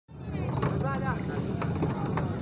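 Faint voices of people standing around over a steady low rumble, with a couple of light clicks.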